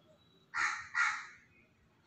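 A bird's harsh call, given twice in quick succession, each about a third of a second long.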